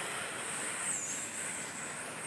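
Steady background hiss with a faint, thin high-pitched whine that dips briefly in pitch about a second in.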